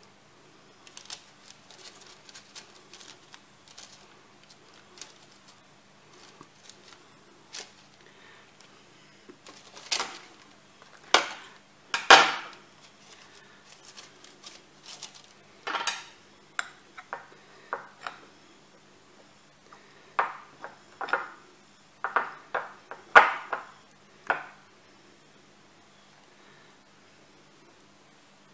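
Stainless-steel trigger scoop knocking and scraping against a glass mixing bowl and clicking as its release lever sweeps the sticky oat and walnut mixture out. It makes a series of sharp clinks and knocks, faint and scattered at first, loudest around the middle and again near the end.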